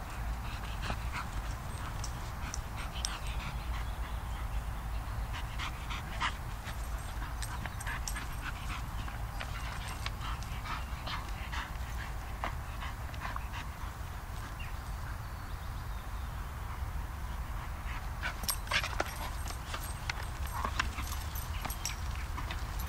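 A small dog whimpering and panting as it grips and tugs a tyre hanging on a rope. Scattered short clicks and rustles run throughout, thickest near the end, over a steady low wind rumble on the microphone.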